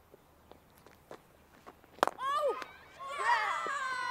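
A cricket bat strikes the ball once with a sharp crack about halfway through. A single shout follows, then several players shouting together, louder toward the end, as the ball is caught.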